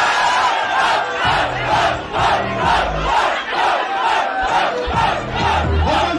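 A packed crowd shouting together in a steady rhythm, a little over two shouts a second, loud throughout.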